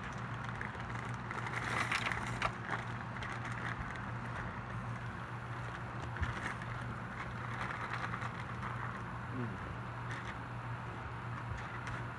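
A steady low hum under faint background voices, with a few light clicks.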